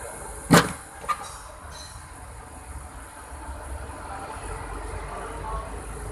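A sharp knock about half a second in, then a lighter click about half a second later, over a steady low rumble.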